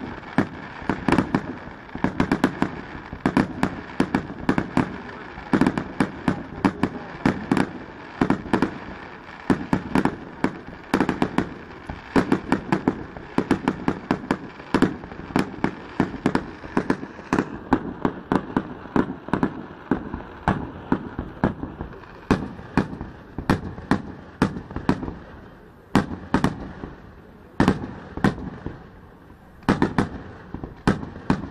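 Fireworks display: a dense, unbroken barrage of bangs and crackling, several reports a second. The high crackle thins after about two thirds of the way, leaving a few louder single bangs near the end.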